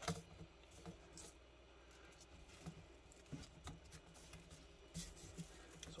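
Faint, scattered clicks and rustles of hands handling a plastic hula hoop and cinching a strap around it on a TV-stand base. The surroundings are otherwise near silent.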